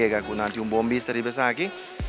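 A person's voice talking, with no clear words, that fades out near the end.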